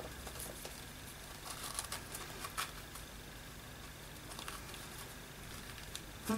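Faint rustling and a few light ticks of hands handling a small paper tag and its seam-binding ribbon, over a steady low hum.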